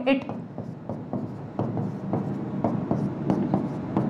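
Chalk writing on a blackboard: a run of short strokes as letters and bond lines of a structural formula are drawn.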